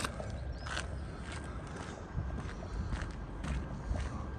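Footsteps of a person walking on an outdoor walkway, a few soft steps over low steady background noise.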